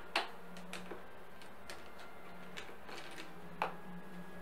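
A few short, sharp clicks and taps from pens being handled as a thick pen is swapped for a thinner one. The loudest comes just after the start and another about three and a half seconds in, over a faint steady hum.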